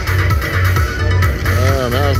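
Slot machine bonus-round music: looping electronic music with a steady bass beat while the reels spin. A man's voice comes in near the end.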